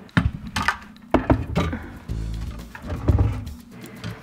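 Background music with several knocks and thuds as a plastic reverse osmosis filter unit is set down and positioned inside an under-sink cabinet.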